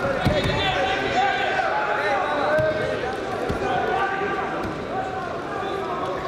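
Heavyweight Greco-Roman wrestlers grappling on the mat, with a few dull thuds of bodies hitting it, under men's voices shouting.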